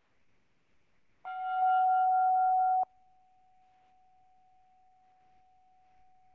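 A struck chime rings out once, marking the end of a minute of silent prayer: one clear tone with bright overtones starting about a second in. After a second and a half it drops suddenly to a faint ring at the same pitch that lingers.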